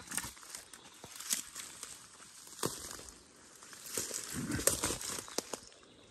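Footsteps pushing through dense leafy undergrowth: rustling foliage with irregular sharp cracks of stems and twigs, busiest about four to five seconds in.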